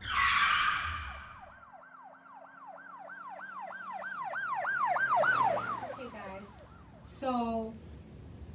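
A swishing hit, then an emergency-vehicle siren wailing up and down about four times a second, growing louder and then fading away with its pitch dropping as it passes. A brief voice sounds near the end.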